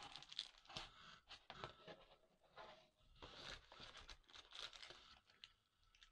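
Cardboard camera box and its packaging being handled and opened: quiet, irregular rustling and crinkling with small clicks and knocks.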